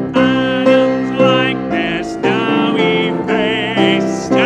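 A church congregation singing a hymn with instrumental accompaniment, in sustained notes that change about every half second, with a wavering held note near the end.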